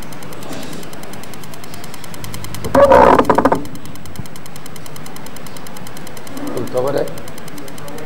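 A man's voice through the loudspeaker system: a short, loud utterance about three seconds in and a shorter, quieter one near seven seconds. A steady hiss runs underneath.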